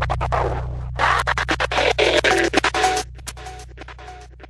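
Hip-hop track's closing instrumental: turntable scratching, the record cut into rapid choppy stabs, over a steady low bass drone. The scratching thins out and drops away about three seconds in.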